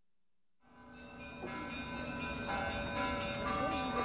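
Bells ringing, several pitches ringing on and overlapping, fading up from silence about half a second in.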